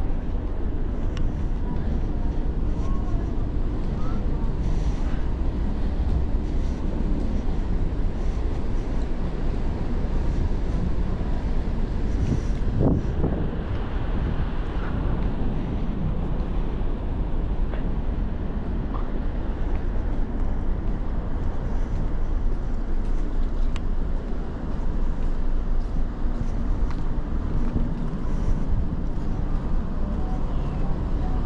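Wind buffeting the microphone on a ship's open deck at sea: a steady, deep rush with no break.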